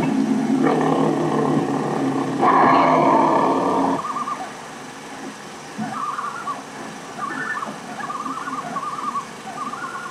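A cougar's long, drawn-out yowl, swelling louder midway and cutting off abruptly about four seconds in. After it come quieter, short wavering trills.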